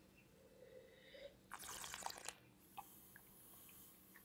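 A quiet sip of red wine from a glass, drawn in with a short slurp about one and a half seconds in, followed by soft breathing as it is tasted.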